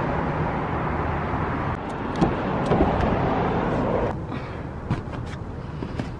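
Steady road traffic noise for about four seconds, then quieter, with a few light knocks near the end.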